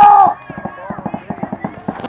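A loud shout, then paintball markers firing in rapid succession, a quick stream of pops about eight a second.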